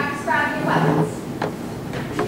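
A woman's voice calling out for about a second, without clear words, then a single sharp knock.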